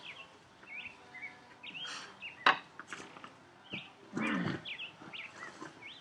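Birds chirping in short scattered calls, with one sharp knock about two and a half seconds in and a brief low voiced sound about four seconds in.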